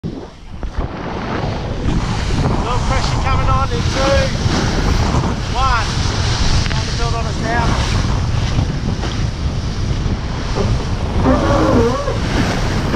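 Wind buffeting the microphone and water rushing along the hull of a TP52 racing yacht sailing fast through choppy sea, as a steady loud rush. A few brief voices come through now and then.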